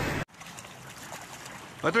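A loud rush of wind and surf noise that cuts off suddenly just after the start, followed by faint small waves lapping and trickling over shoreline rocks.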